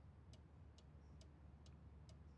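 Faint, even ticking of a clock, about two ticks a second, over near silence.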